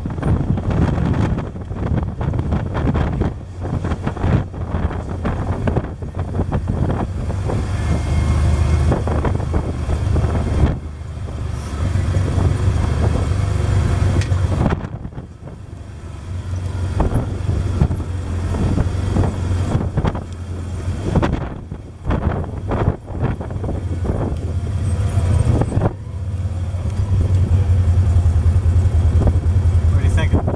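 Can-Am side-by-side UTV engine running as it drives down a rough dirt track, heard from inside the cab, with frequent knocks and rattles from the bumps. The engine drone drops briefly about halfway and is loudest near the end.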